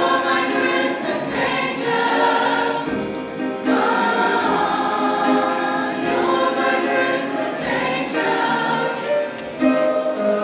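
Mixed choir of young male and female voices singing a choral piece in parts, with a short break between phrases about three and a half seconds in.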